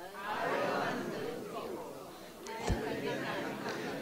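Faint murmur of many audience voices in a large hall, with one brief soft thump about two-thirds of the way through.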